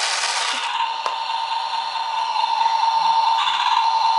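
Small battery toy truck's motor whirring with a steady whine, with a single sharp click about a second in.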